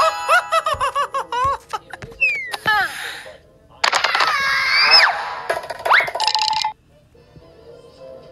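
Cartoon soundtrack: bouncy music with quick comic sound effects, whistle-like pitches sliding up and down. It comes in two bursts with a short break a few seconds in, then cuts off suddenly.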